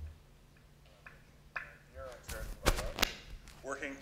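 Narration from a video clip played through the lecture hall's speakers, faint at first over a steady low hum. A few sharp knocks come about halfway through and are the loudest sound.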